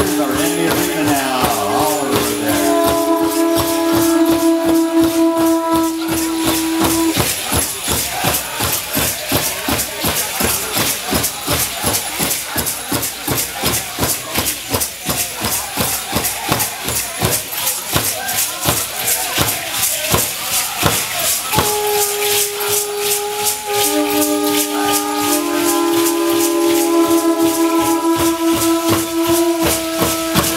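Rattles of Aztec-style dancers shaking in a fast, even rhythm with percussion. Long, steady blown tones sound over them for the first several seconds and again from about three-quarters of the way in.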